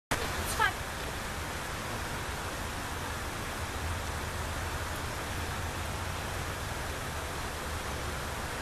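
Steady rushing noise with a low hum from an air-conditioning unit running. A short falling chirp sounds about half a second in.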